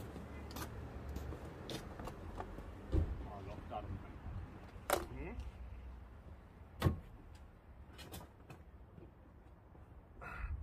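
Door of a Rover P6 being unlatched and opened: three sharp clicks and knocks a couple of seconds apart, over a low rumble.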